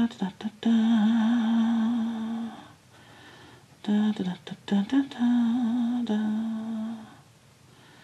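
A woman humming to herself in two short phrases, each a few quick notes followed by a long, slightly wavering held note, with a pause of about a second between them.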